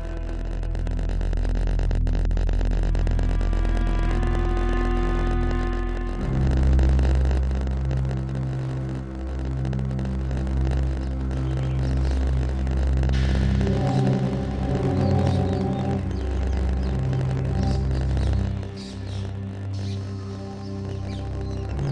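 Background score of held synthesizer chords over a deep sustained drone, the chords changing about four, six and thirteen seconds in.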